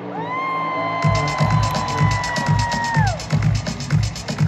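Live stadium pop music as an electronic dance beat kicks in suddenly about a second in, a steady pounding kick drum with fast hi-hat ticks. Over it a single high-pitched cheer from a fan near the phone slides up, is held for about three seconds, and falls away.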